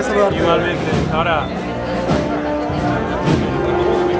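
A wind band playing, with long held notes, under the talk of a crowd of voices.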